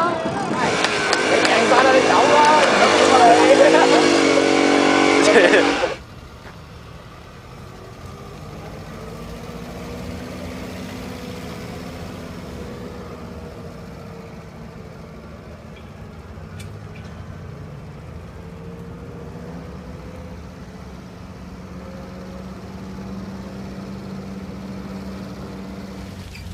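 Loud voices of people talking for about six seconds, cut off suddenly. After that comes a vintage Mazda three-wheeled truck's engine running with a steady low hum as the truck drives slowly along.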